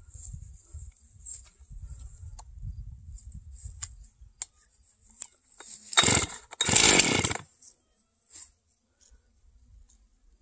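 Stihl MS311 59cc two-stroke chainsaw's starter cord pulled twice in quick succession, about six and seven seconds in, the engine turning over without catching. Before the pulls, a few light clicks and handling sounds.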